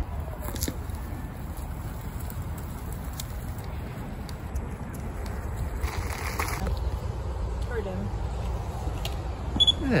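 Steady low rumble of wind on the microphone, with faint rolling noise from a Hiboy S2 Pro electric kick scooter on a dry dirt path and a brief hiss about six seconds in.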